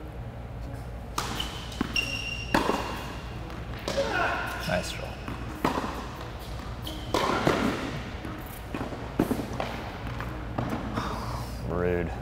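Tennis rally on an indoor hard court: a string of sharp ball strikes off racket strings and bounces on the court, about one to two seconds apart, each echoing through the hall.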